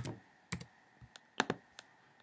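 Computer keyboard keystrokes: about seven separate, sharp clicks spread over two seconds, some in quick pairs, as a number is typed into a form field.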